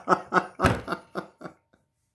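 A man laughing: a quick run of short chuckles, about five a second, that trail off about a second and a half in.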